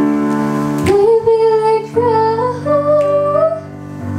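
A woman singing a slow, soulful melody into a microphone, her notes sliding between pitches, over sustained piano chords; the piano changes chord about halfway through.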